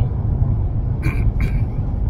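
Steady low rumble of a vehicle heard from inside its cabin, with a couple of short faint sounds about a second in.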